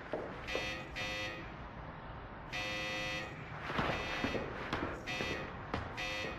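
Electric intercom buzzer sounding in bursts: a couple of short buzzes, a longer one of almost a second, then short buzzes again, with a few soft knocks in between.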